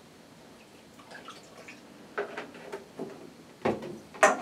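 Flax milk pouring from a carton into a jar, then a few light knocks and a thump near the end as the carton is set down on the table.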